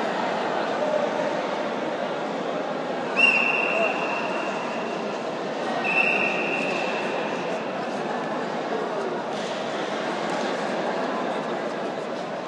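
Two long blasts of a referee's whistle, one about three seconds in and a shorter one about six seconds in, signalling the start of a grappling bout, over the steady chatter of spectators in a sports hall.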